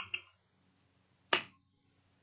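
Computer keyboard keystrokes: a couple of faint clicks at the start, then one sharp key click just over a second in.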